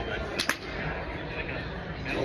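Golf club striking a ball off a hitting mat: two sharp cracks in quick succession about half a second in, the second louder.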